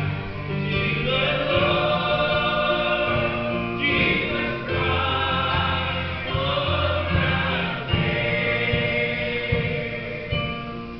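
Mixed church choir of men's and women's voices singing a gospel song in harmony, led by a male singer on a microphone, with acoustic guitar accompaniment. The notes are long and held, in continuous phrases.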